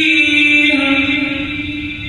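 A man's voice reciting the Quran aloud in melodic chant, holding one long note that steps down slightly in pitch under a second in and fades toward the end.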